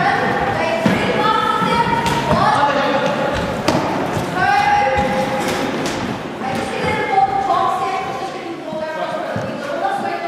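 Players' voices calling out in a large, echoing sports hall, with several thuds of a football being hand-passed, caught and bounced on the wooden floor.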